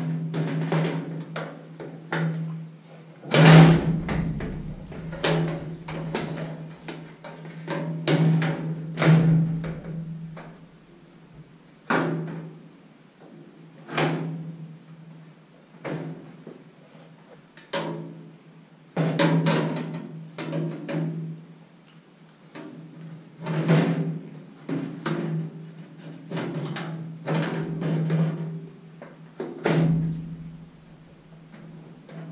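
Irregular knocks and clanks of a metal drawer being fitted into a sheet-metal workbench cabinet, each with a short low ring from the cabinet body.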